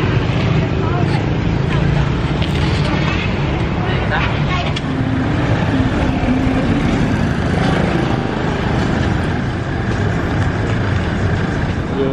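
Busy street ambience: a steady rumble of passing motorbikes and cars, with people talking in the background.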